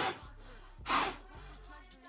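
Sharp puffs of breath blown at candle flames to put them out, one at the start and another about a second later.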